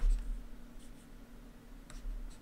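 Faint taps and scratches of a stylus writing on a tablet screen, over a steady low hum.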